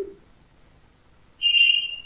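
A short, steady, high-pitched whistle-like tone lasting under a second, starting about a second and a half in after a moment of near silence.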